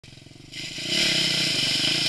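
Off-road dirt bike engine under throttle as it rides into a deep muddy puddle, getting louder about half a second in, with a hiss of water spraying up.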